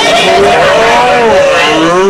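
Cartoon sound effect of a pickup truck's engine revving with a wavering, gliding pitch as it speeds away, heard through a TV speaker.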